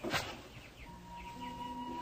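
Soft background music: sustained held notes come in about halfway through, with a few faint bird chirps.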